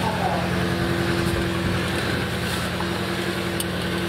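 Subaru Legacy's twin-turbo flat-four engine idling steadily, heard from inside the cabin, with an even low pulsing and a faint steady hum.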